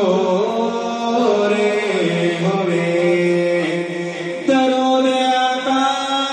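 A man singing a Punjabi naat into a microphone, drawing out long held notes that step up and down in pitch; a new, louder note begins sharply about four and a half seconds in.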